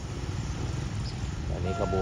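Small motorcycle engines running as riders pass close by: a low, steady, fast-pulsing drone.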